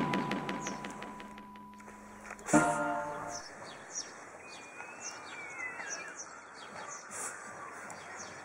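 Background music with a steady beat fading out, a short held tone about two and a half seconds in, then small birds chirping repeatedly in the background.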